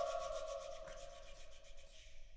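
Close of an all-male a cappella choir: the upper voices drop off at the start and one lower sung note lingers and fades, over a quick, evenly pulsing breathy hiss that dies away by the end.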